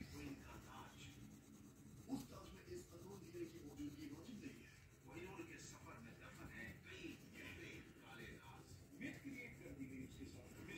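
Faint background voices, with a wax crayon scratching on paper as it colours in.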